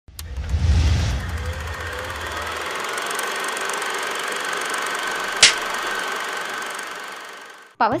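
Produced intro sound effects: a deep boom, then a steady hissing whir with a faint tone and light ticking, cut by one sharp click about five seconds in, fading out just before a voice starts at the very end.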